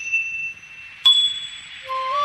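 Two bell-like chimes about a second apart, each struck sharply and ringing out as it fades, opening a film song; a flute melody comes in near the end.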